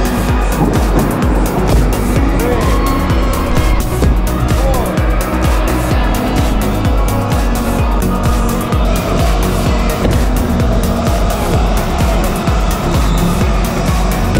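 Go-karts racing on an indoor track, with engines running and tyres squealing in short pitch glides, over steady loud music.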